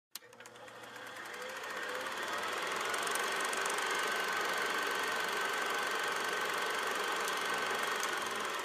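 Steady mechanical whirring sound effect under an animated logo, opening with a click and fading in over about the first two seconds, then holding level.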